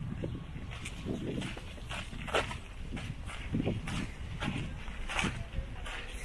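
Footsteps scuffing on a stony path, irregular, about one or two a second, over a low rumble of wind on the microphone.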